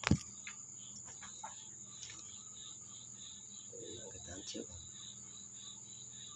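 Crickets chirping steadily, a continuous high trill with a pulsing note beneath it. A sharp knock comes right at the start, and faint handling noises follow about four seconds in.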